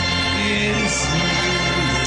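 Electronic organ on a keyboard holding sustained chords, with a voice singing a short phrase over it.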